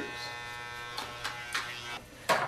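Corded electric hair trimmer running with a steady buzz, with a few faint short strokes over it about a second in.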